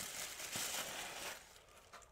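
Packing material rustling and crinkling faintly as a small item is unpacked from a box, dying away about a second and a half in.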